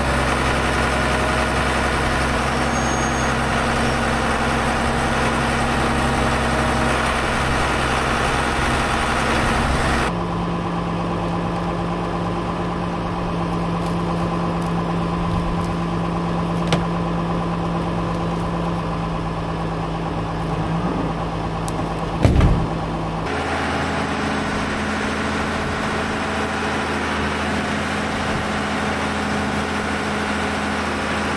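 John Deere 7620 tractor's six-cylinder diesel engine running steadily, its tone shifting abruptly twice. A short thump about three-quarters of the way through.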